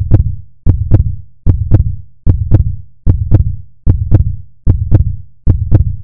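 A deep, heartbeat-like pulse: pairs of low thumps repeating evenly about every 0.8 seconds, roughly 75 to the minute.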